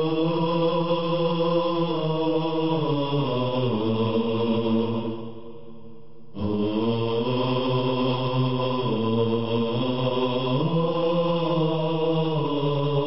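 Background music of low, wordless vocal chanting in long held notes that step slowly up and down in pitch. It fades down about five seconds in and comes back abruptly just after six seconds.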